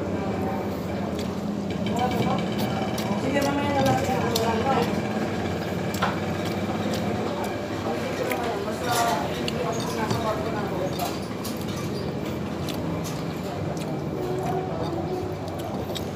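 Indistinct background conversation over a steady low hum, with a few light clicks and clinks scattered through.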